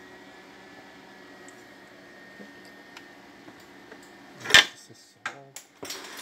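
Metal parts of a Vigorelli sewing machine being handled: a faint steady background hum, then one sharp metallic clank about four and a half seconds in, followed by a few lighter clicks.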